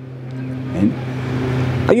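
A motor vehicle going by, its noise growing steadily louder, over a constant low hum.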